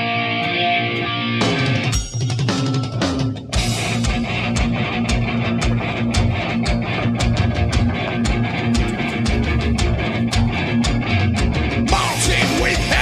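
Heavy metal band playing live, instrumental with no vocals: distorted electric guitar, bass guitar and drum kit. A guitar line opens it, the drums come in about a second and a half in, and from about three and a half seconds a steady fast beat runs under a held guitar riff.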